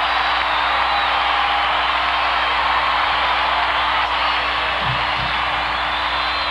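Large stadium crowd cheering steadily, with scattered whistles.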